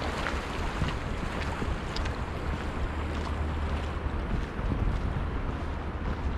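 Wind buffeting the microphone with a steady low rumble, over the continuous rush of fast-flowing river water.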